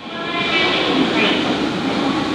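Running escalators in an underground station: a steady mechanical hum and hiss, fading in over the first half second, with faint echoing voices behind it.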